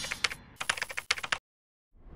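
Keyboard-typing sound effect: a quick, irregular run of key clicks that cuts off suddenly about one and a half seconds in.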